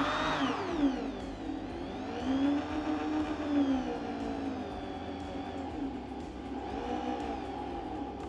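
Dexter corded electric drill running a wood twist bit into a block of wood, its motor whine rising and falling in pitch in slow swells, about three times, as the bit bores in and clears its chips.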